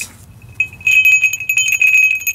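An old dug-up sleigh bell (a round crotal bell with a slot and a loop) being shaken: a quick jingle with a clear high ring, starting about half a second in and lasting over a second. The loose ball inside still rattles freely, so the bell still works.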